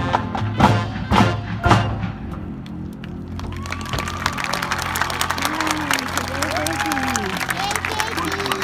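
Marching band closing its field show with three loud ensemble hits about half a second apart, then the crowd in the stands breaking into applause with whoops and voices.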